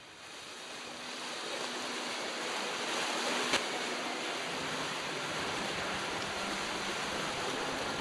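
Steady rush of wind and water aboard a sailing trimaran under way, fading in over the first second, with a single short click about three and a half seconds in.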